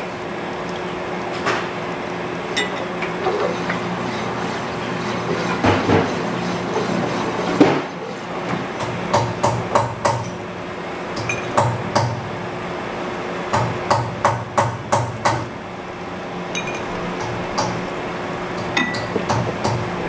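Sunnen honing machine running with a steady hum as a Datsun truck spindle's kingpin bushing is honed on the spinning, oil-flooded mandrel. Runs of sharp metallic clicks and clinks come from the part being worked along the hone, several a second at times, most of all through the middle and near the end.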